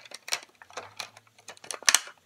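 Clear plastic packaging crinkling and clicking as hands work at opening it, in a string of sharp crackles with the loudest near the end. The stiff package is hard to open.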